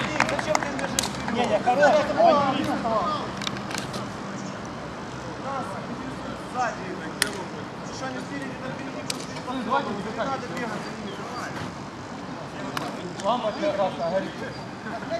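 Futsal players' voices calling and shouting across the pitch, loudest in the first few seconds, with a few sharp knocks scattered through; the sharpest knock comes about seven seconds in.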